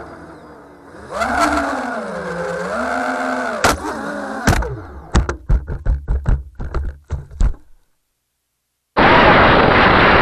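FPV quadcopter's motors whining, their pitch rising and falling with the throttle, then a sharp crack about four seconds in and a run of knocks as the quad crashes and tumbles into grass. After about a second of silence, a loud steady rushing noise starts near the end.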